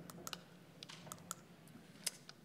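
Faint, irregular clicks, about half a dozen in two seconds, like keys being tapped, over a quiet room.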